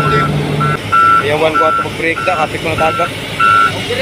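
Excavator's warning alarm beeping at an even pace, one short high beep about every 0.6 seconds, over the low steady hum of its engine, which fades under a second in.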